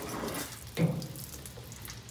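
Gasoline pouring and splashing out of a freshly cut metal fuel line as a rubber hose is pushed onto the cut end. A brief louder sound comes just under a second in.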